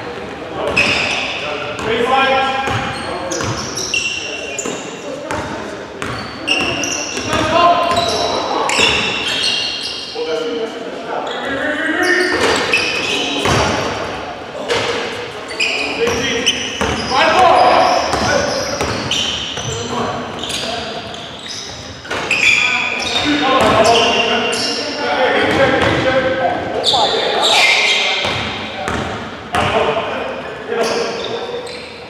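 Basketball being dribbled on a hardwood gym floor, with sneakers squeaking and players calling out, all echoing in a large gymnasium.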